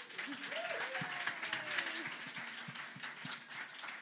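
Audience applauding, many hands clapping at once, with a few voices cheering over it early on; the clapping thins out near the end.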